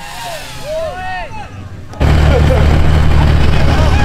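Voices of onlookers, then about halfway through a sudden jump to a loud, steady low rumble: a Ford Super Duty pickup's engine running under throttle as the truck, stuck deep in a pond, creeps forward.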